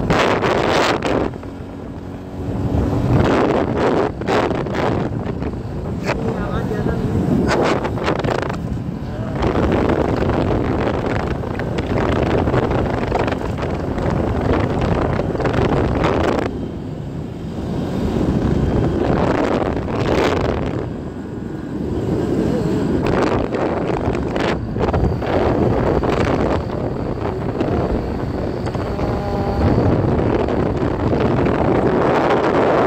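Heavy wind buffeting on the microphone of a vehicle moving along a road, rising and falling in irregular gusts, with a vehicle's running noise underneath.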